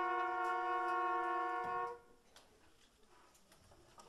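Concert wind band holding a sustained brass chord after a loud accent. The chord is cut off cleanly about two seconds in, leaving faint small clicks and knocks.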